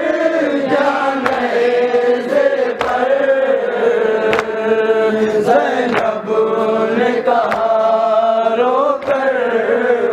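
Men chanting a nauha, a Shia lament for Muharram mourning, in long sung phrases, with a sharp chest-beating slap (matam) about every second and a half.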